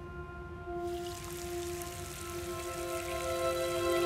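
Soft background music of long sustained notes. About a second in, a bathroom tap starts running water into the sink, a fine steady splashing hiss under the music.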